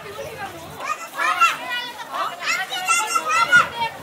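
Children's high-pitched voices calling out and chattering, in two loud spells: one from about a second in and one through the second half.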